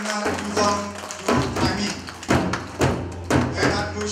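Korean traditional barrel drums (buk) and small hand drums (sogo) struck together in a series of sharp hits over backing music with a steady low tone and a melodic line.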